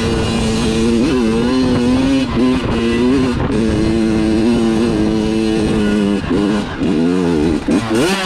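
Kawasaki KX100 two-stroke single-cylinder dirt bike engine pulling at high, fairly steady revs up a hill climb, its pitch dipping and recovering a few times. Near the end the revs climb sharply as the gearbox slips into neutral.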